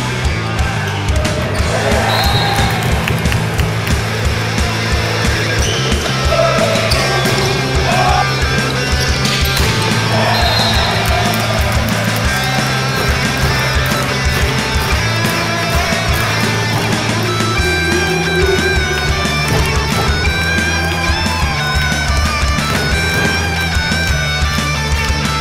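Loud rock music with a fast, steady drum beat and guitar, laid over the footage as a soundtrack.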